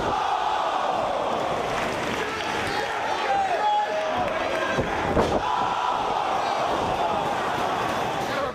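Wrestling arena crowd cheering and shouting throughout, with a slam about five seconds in as a wrestler is dropped onto the ring in a piledriver.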